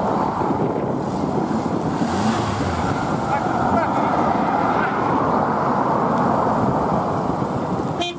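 Steady vehicle noise: a car engine running close by, with road traffic around it.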